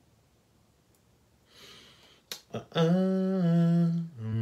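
A man humming a low held note, starting near three seconds in and stepping down slightly in pitch. Before it there is a quiet stretch, then a soft rustle and two clicks.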